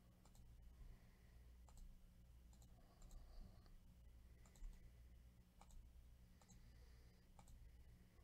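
Faint computer mouse clicks, scattered about once a second, over a low steady hum.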